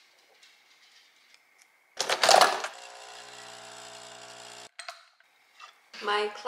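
Nespresso capsule coffee machine brewing: a loud clunk about two seconds in, then the pump hums steadily for about two seconds and cuts off suddenly, followed by a short click.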